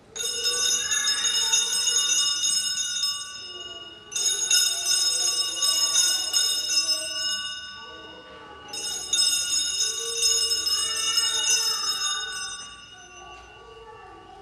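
Sanctus bells rung three times, about four seconds apart, each ring sounding bright and high and fading away. They mark the elevation of the chalice just after the words of consecration.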